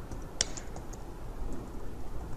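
Computer keyboard being typed on: a few scattered keystrokes, the sharpest about half a second in.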